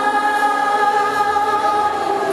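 Live pop-jazz vocal performance: a male singer holds one long sung note over the band's backing, from the stage PA.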